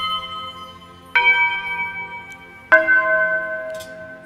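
Altar bells rung at the elevation of the host during the consecration. One strike rings on from just before, then two more follow about a second and nearly three seconds in, each a step lower in pitch and ringing out between strikes.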